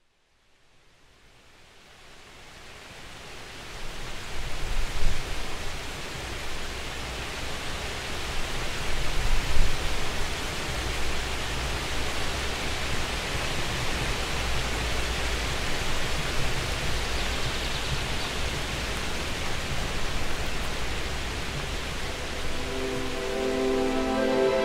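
A steady rushing noise fades in over the first few seconds, with low rumbling surges early on, then holds evenly. Soft music notes come in near the end.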